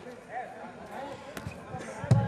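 Faint voices in a hall, with a single sharp knock a little after halfway through.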